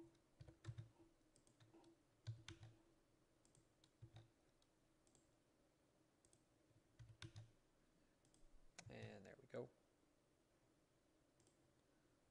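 Faint computer mouse clicks and keyboard keystrokes, scattered and irregular, as commands are entered. A brief vocal murmur comes about nine seconds in.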